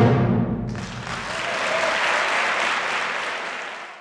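A concert band's held final chord cuts off and rings briefly in the hall, then the audience breaks into applause about three-quarters of a second in; the applause fades out near the end.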